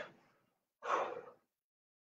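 A man gives one short, breathy exhale of effort, a sigh about a second in, while holding a plank.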